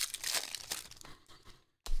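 Foil trading-card pack being torn open and crinkled by hand: a crackling rustle that is loudest at first, fades over the second half and cuts off shortly before the end.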